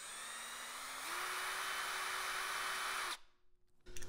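Electric drill spinning a 3/8-inch-shank twist bit in a drill extension, the bit turning free in the air with no load. The motor whine steps up in pitch about a second in, holds steady, then stops shortly after three seconds.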